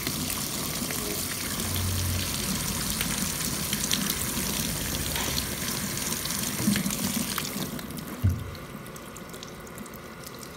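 Handheld salon shower head spraying water onto wet hair beside the ear while fingers rub the ear, a steady hiss of spray. The spray stops about eight seconds in, followed shortly by a brief knock.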